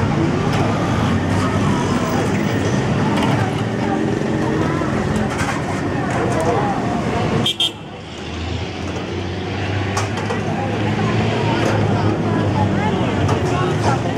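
Busy street ambience: many people chattering over passing car and motorbike traffic. The sound drops briefly about halfway through, then builds back up.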